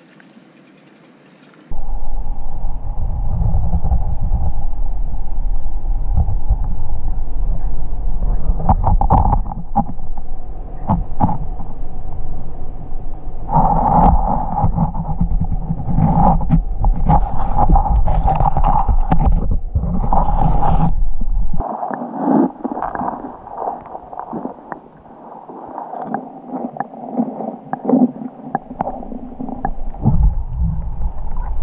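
Muffled underwater rumble of hot-spring water through a submerged camera's microphone, starting suddenly about two seconds in, with scattered knocks and scrapes. The deep rumble drops away about eight seconds before the end, leaving fainter clicks, and comes back just before the end.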